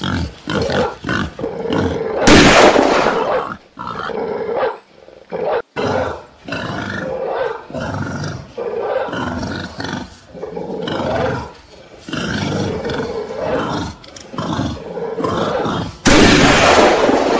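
A large animal roaring and growling in repeated loud, harsh bursts, the loudest about two and a half seconds in.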